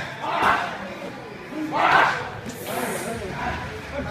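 Muay Thai pad work: two short shouts, each landing with a strike on the pads, about half a second and two seconds in, over general gym noise.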